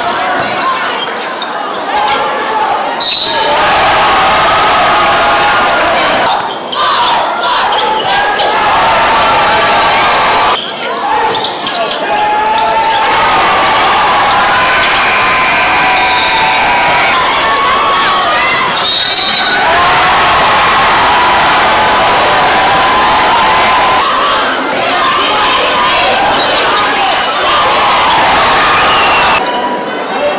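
Basketball game sounds in a reverberant gymnasium: a crowd shouting and cheering over many overlapping voices, with a basketball bouncing on the court.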